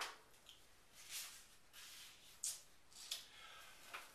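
Faint rustling of a sheet of paper being handled, a few short rustles.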